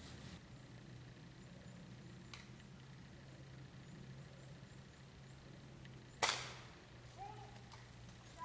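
A single sharp crack of a pellet air rifle firing, with a short decay, a little past six seconds in; a couple of short high-pitched sounds follow near the end.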